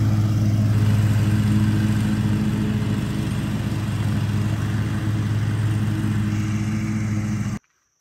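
Stand-on lawn mower engine running steadily while mowing, with a constant drone that cuts off abruptly near the end.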